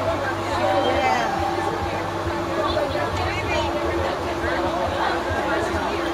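Several people talking at once, overlapping chatter, over a steady low hum.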